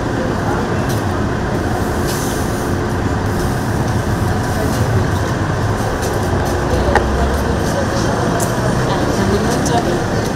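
Many people talking over one another in a jostling crowd, with scattered knocks and shuffles.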